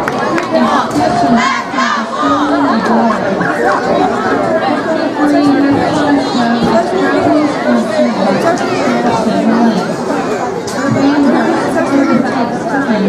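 Crowd chatter in stadium stands: many people talking at once, with one voice standing out close by.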